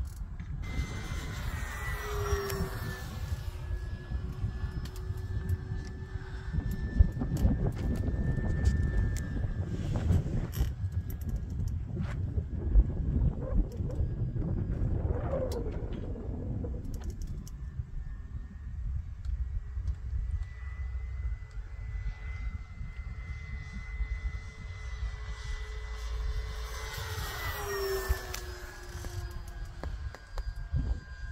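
Electric 1.2 m RC model T-28 warbird in flight: a steady motor-and-propeller whine that drops in pitch as the plane passes by, about two seconds in and again near the end. Wind rumbles on the microphone underneath.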